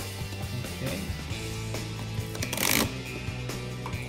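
A cardboard sleeve sliding off a card deck box, one brief papery rustle a little past halfway, over steady background guitar music.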